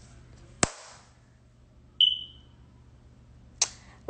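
A single short, high-pitched electronic beep that fades away quickly, set between two sharp clicks about three seconds apart.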